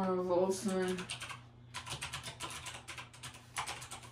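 Typing on a computer keyboard: a fast run of key clicks starting about a second in.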